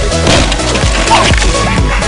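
Dance music with a steady beat, with a cracking crash of wood a short way in as a bicycle hits a plywood jump ramp.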